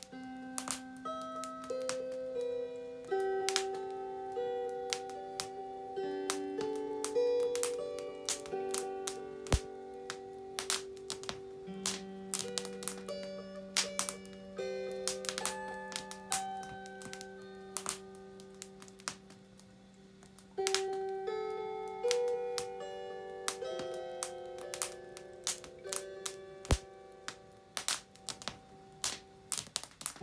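A lyre (Leier) tuned to 432 Hz plays a slow melody of long, ringing plucked notes. Over it, burning firewood crackles and pops in frequent, irregular sharp snaps.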